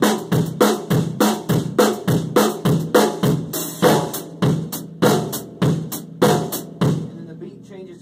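Drum kit played with sticks in a steady full-time groove, bass drum and snare, about three hits a second. The groove stops about seven seconds in.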